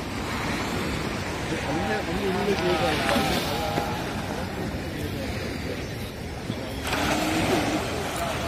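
Surf breaking and washing up a beach: a steady rush of waves. People's voices talk over it for a short while about two seconds in and again near the end.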